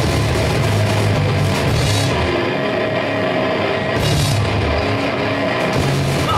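Live heavy rock band playing loud: distorted electric guitar and bass with a drum kit. About two seconds in, the cymbal sheen and the deepest bass drop away for about two seconds, then the full band comes back in.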